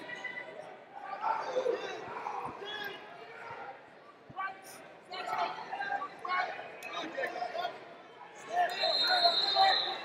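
Voices shouting and talking across a large, echoing arena hall, with a few thuds about two and a half and four seconds in; the voices get louder near the end.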